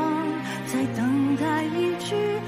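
A woman singing a slow Mandopop ballad phrase with vibrato over sustained backing chords; the voice pauses briefly and starts a new line about a second in.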